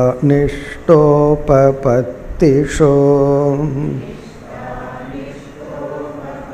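A man's voice chanting a Sanskrit verse (shloka) in a steady, melodic recitation on held notes, in several phrases that stop about four seconds in; fainter voices follow near the end.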